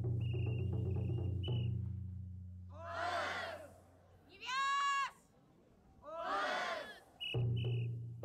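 Cheering-squad call and response: rhythmic backing music stops, a group of students shouts in unison, a single high voice calls out a held cry, and the group shouts again before the music starts back up near the end.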